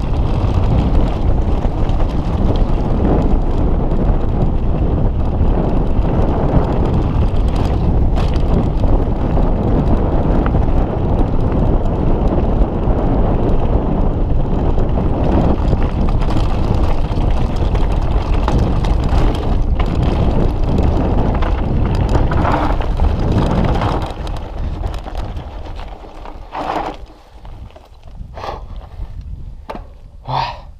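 Mountain bike descending a gravel track: tyres rolling over loose stones and wind buffeting the handlebar-mounted microphone, a loud steady rumble. About 24 seconds in it drops away, and a few short breaths from the rider follow near the end.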